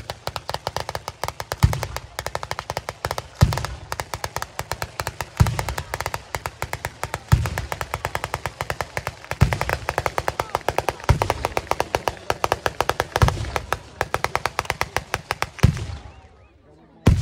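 Fireworks firing a rapid, unbroken string of sharp cracking reports, many a second, with a heavier deep boom about every two seconds. It starts abruptly and cuts off near the end.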